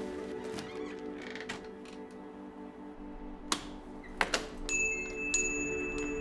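Background music of slow, held chords, with a few sharp clicks about three and a half and four seconds in.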